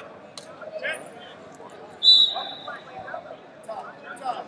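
A referee's whistle: one sudden blast about two seconds in, the loudest sound here, fading out over about a second. It signals the start of the period of wrestling, over voices in a large hall.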